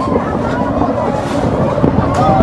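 Wind rumbling on the microphone, with people's voices in the background and a single sharp knock near the end.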